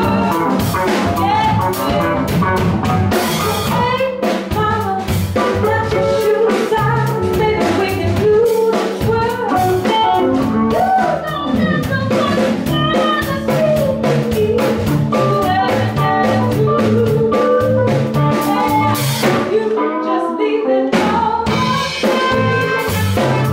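Live blues band playing: a woman singing over electric guitar, keyboard, bass and a drum kit keeping a steady beat. Near the end the low end drops out for a moment before the full band comes back in.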